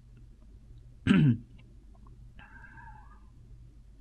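A short, loud cough-like vocal sound about a second in, falling in pitch, followed by a fainter brief wavering tone near the middle.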